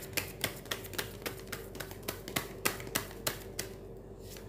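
Tarot cards being shuffled by hand: a steady run of dry card slaps and clicks, about three to four a second.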